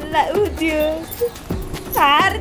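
A woman's high, wavering voice, holding steady notes about halfway through.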